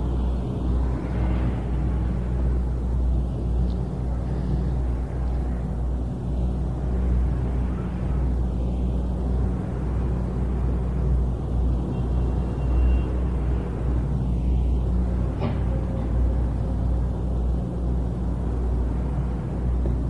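A steady low hum with rumble underneath and no speech, broken only by a faint single click about three-quarters of the way through.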